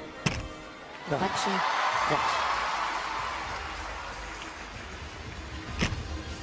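Arena crowd cheering that swells about a second in and slowly fades, with a sharp thud of a gymnast's feet landing on the balance beam just after the start and another near the end.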